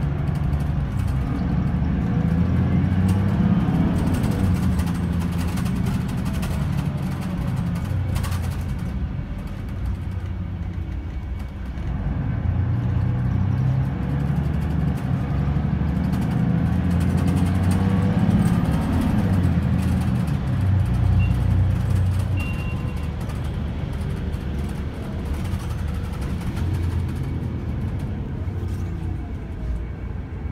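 Interior sound of a Mercedes-Benz Citaro O530 single-deck bus under way: the engine pulls up through its revs twice, about two seconds in and again around the middle, easing off in between, over a steady rumble of road and tyre noise.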